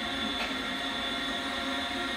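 Commercial donut-making machinery (fryer and conveyor line) running with a steady mechanical hum: a noisy whir with several held tones under it.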